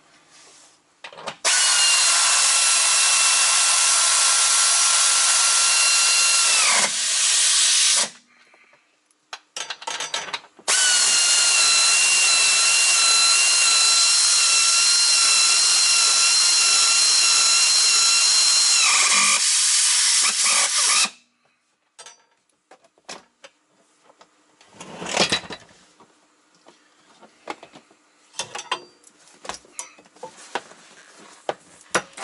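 Pneumatic tool driving the seat's mounting bolts in two long runs of about six and ten seconds: a steady whine over loud air hiss that falls in pitch each time the trigger is let go. A short burst of hiss follows later, among small clicks and taps.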